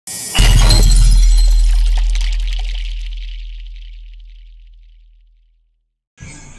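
Intro sound effect: a glass-shatter crash with a deep bass boom about half a second in, the crash trailing off and the boom fading out slowly over about five seconds.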